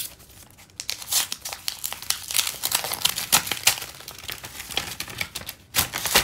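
Paper envelope being opened by hand: irregular paper tearing and crinkling from about a second in, loudest just before the end.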